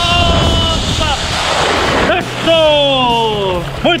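A man whooping and yelling in long, falling cries as he skims along the river on a zip line. There is a rush of splashing water spray about a second in, from his legs dragging through the surface.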